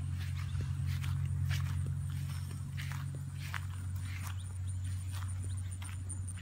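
Footsteps walking through long grass, several steps at an uneven pace, over a steady low rumble.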